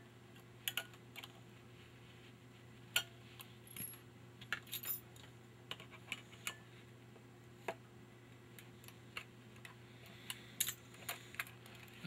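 Scattered light clicks and ticks of small metal trigger parts and a tool against a Remington Nylon rifle's nylon stock as the disconnector springs are worked loose, over a faint steady hum.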